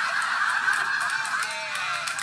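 Studio audience and panel laughing together, many voices at once, played back through a screen's small speaker so it sounds thin.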